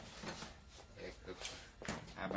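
Low, indistinct speech with a sharp click near the end.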